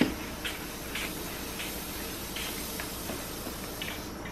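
Floor pump putting a little air into a bicycle inner tube through its opened valve: a steady hiss of air with faint strokes every half second or so.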